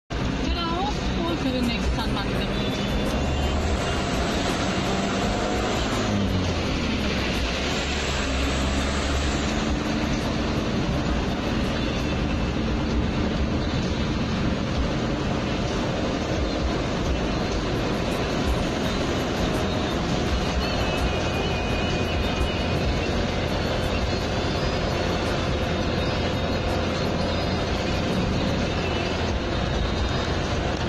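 Steady engine and road noise inside the cab of a moving vehicle, with music and a voice playing over it.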